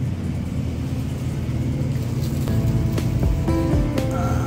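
Supermarket ambience: a steady low hum, with background music coming in about two and a half seconds in.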